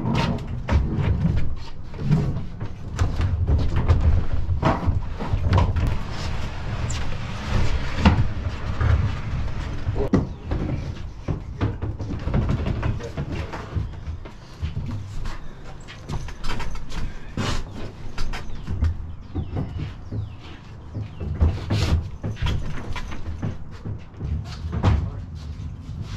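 Repeated irregular knocks, bumps and scrapes of a heavy wooden dresser being shifted across the wooden floor of a box truck's cargo area and onto a hand truck, over a low rumble.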